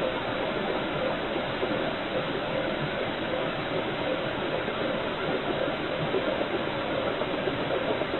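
Steady hiss from a security camera's microphone, with a faint steady hum under it through the first half.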